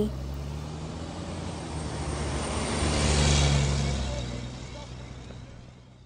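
Engine sound effect of a bus pulling away: a low rumble that swells to its loudest about three seconds in, then fades out.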